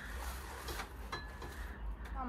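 Faint room noise with a low steady rumble and a few soft handling clicks.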